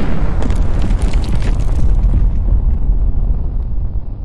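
Explosion sound effect: a sudden loud blast with crackling over the first couple of seconds, then a long deep rumble that slowly fades.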